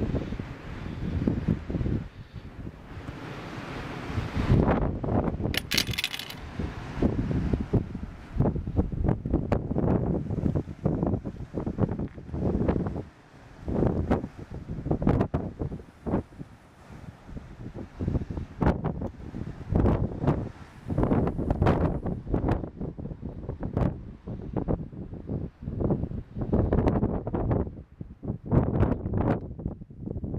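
Strong wind buffeting the camera microphone, coming in low, uneven gusts that rise and fall every second or two. A brief high ringing sound about six seconds in.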